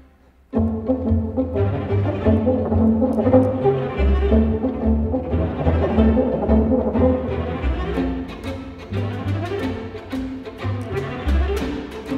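A string orchestra (violins, cellos and double basses) playing a concerto accompaniment with bowed strings and shifting low bass notes. It enters after a brief silence about half a second in.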